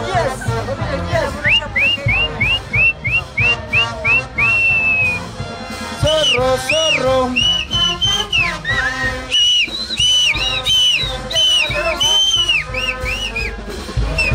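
Huaylash played by a street band orchestra, with a steady drum beat under the melody. Early on comes a run of about eight short, quick, rising high notes that ends in one held note; from about halfway a fuller melody of arched notes takes over.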